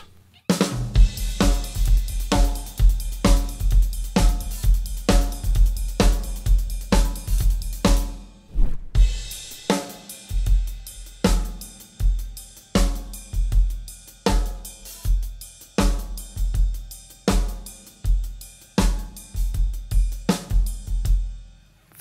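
Solo drum kit playing a rock groove: kick drum and snare under a cymbal pattern played on a right-hand ride cymbal. It breaks off briefly about eight seconds in and then picks up again.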